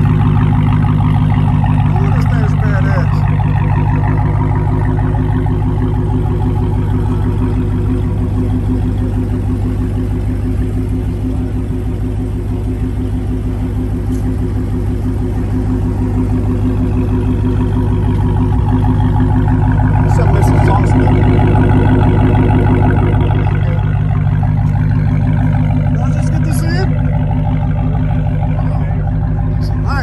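Dodge Challenger SRT Hellcat's supercharged 6.2-litre HEMI V8 idling steadily through its quad exhaust, a little louder for a few seconds past the middle.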